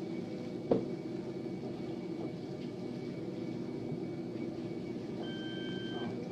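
Steady low machine hum, with a single click about a second in and a steady electronic beep starting near the end.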